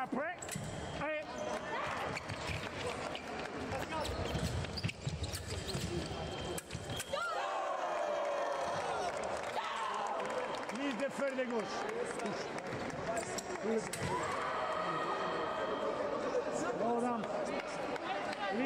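Fencing hall sound: a steady murmur of voices, with rubber-soled shoes squeaking in short bursts on the piste and now and then a sharp knock.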